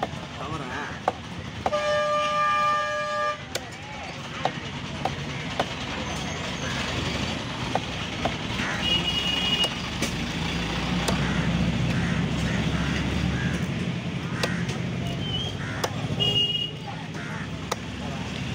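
Cleaver chopping through fish on a wooden log block, sharp knocks at irregular intervals, over busy market noise with voices. A vehicle horn sounds for about a second and a half about two seconds in, short high beeps come around the middle and near the end, and an engine rumble builds up in the middle.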